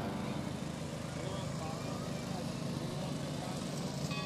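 Small engines of miniature parade cars running as they drive past, under indistinct voices of people talking nearby.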